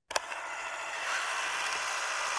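Title-card transition sound effect: a sharp click, then a steady hissing noise that cuts off suddenly.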